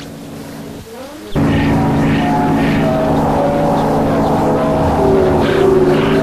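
Electronic music that enters suddenly about a second in: a sustained low chord and a slow melody line over it, with hissy percussive hits about twice a second.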